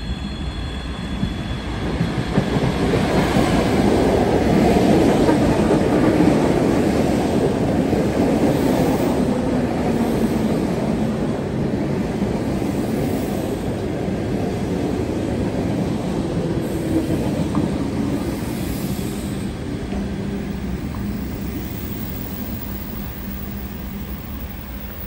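ET2M electric commuter train arriving at a platform and slowing to a stop, its wheels running on the rails. The noise grows loud within the first few seconds as the cars come alongside, then eases off slowly as the train brakes, with a low whine falling in pitch as it slows.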